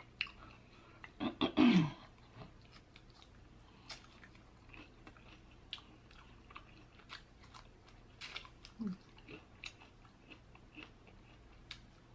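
A person chewing crispy fried chicken wings close to the microphone: scattered crunches and wet mouth clicks. A short falling 'mm' about one and a half seconds in is the loudest moment, with a smaller one near nine seconds.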